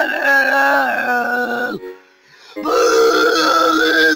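A voice holding two long drawn-out notes, with a short break just under two seconds in. The pitch dips slightly as each note ends.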